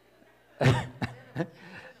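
A person coughing: one strong cough about half a second in, then two shorter ones.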